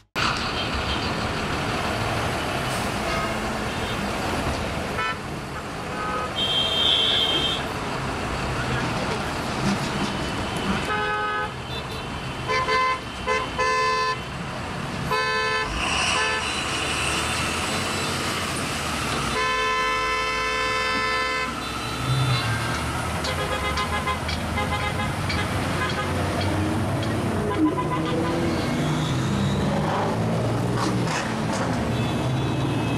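Busy city street traffic with car engines running. Car horns honk over it: several short toots about a third of the way in, then a longer honk of about two seconds around two-thirds of the way in.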